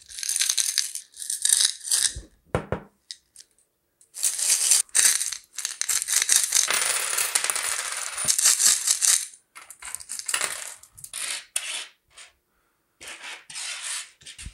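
Coins shaken out of a red Coca-Cola bottle coin bank and spilling onto a wooden table, with short jingling shakes at first, then a dense rattle for about five seconds in the middle. Near the end come scattered single clinks as the coins are slid and spread by hand on the tabletop.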